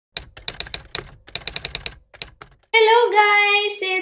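A quick run of typing clicks, keys clacking in two bursts with a short pause between them, stopping about two and a half seconds in. A woman's high, drawn-out voice follows.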